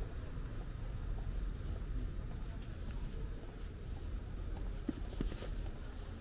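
Steady low rumble of outdoor street ambience, with a few faint short ticks about five seconds in.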